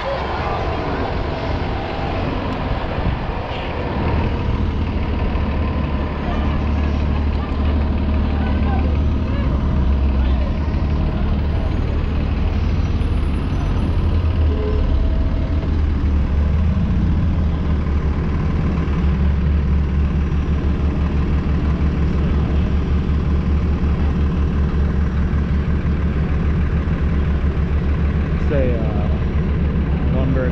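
A city bus running close alongside in street traffic, heard together with wind rumbling on the microphone, with the rumble getting louder a few seconds in.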